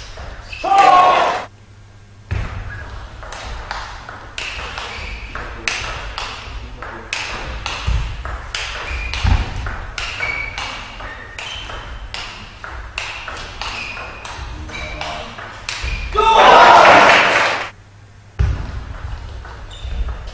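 Table tennis rally: the ball clicks rapidly back and forth off the bats and table, echoing in a large hall. A loud shout comes about a second in, and a longer, louder burst of shouting and cheering comes near the end as the point is won.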